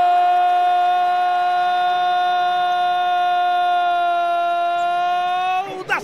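A man's voice holding one long, steady shouted note: the commentator's drawn-out goal cry "Gooool", breaking off just before the end.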